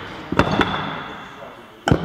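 Barbells loaded with bumper plates knocking and dropping on lifting platforms, echoing in a large hall: two lighter knocks about half a second in, then one loud bang near the end.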